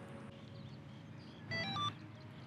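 A short electronic chime about a second and a half in: a quick run of clear beeps stepping between several pitches, lasting under half a second. It is a status alert signalling that the RTK rover's tilt compensation is ready.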